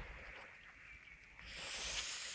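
Faint, steady hiss of light rain falling on a river's surface, swelling into a louder rush of noise about a second and a half in.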